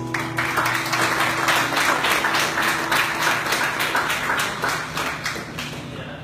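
Audience clapping as a live song ends, the last note of the song ringing out under it for the first second or so; the clapping dies away near the end.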